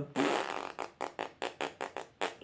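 A person blowing air out through pursed lips: a longer puff, then a run of short, quick puffs, about five a second.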